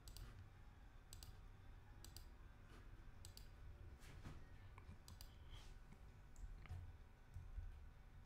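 Near silence: a low room rumble with faint scattered clicks, several coming in quick pairs about every second.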